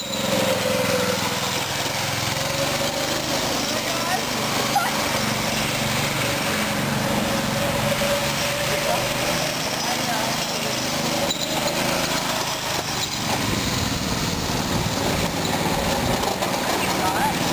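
Small single-cylinder gas engine of a hybrid go-kart, a 6.5-horsepower souped-up lawnmower engine, running steadily as the kart drives.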